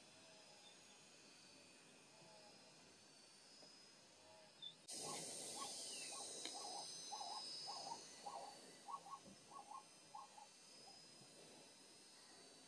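Faint background hiss at first. About five seconds in, the level jumps and a series of short, repeated animal calls starts, about two a second, fading out after some five seconds.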